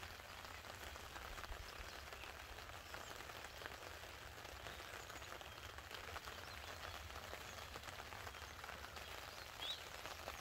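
Faint outdoor ambience of light rain patter, with a low wind rumble on the microphone and one short high chirp near the end.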